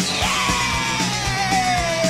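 Loud rock music with a steady drum beat, over which a voice holds one long yell that slides down in pitch.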